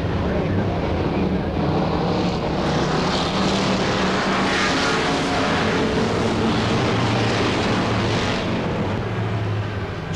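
A pack of V8-powered dirt-track stock cars running flat out around the oval, with a steady, continuous engine drone. The sound swells about four to five seconds in as cars pass closest.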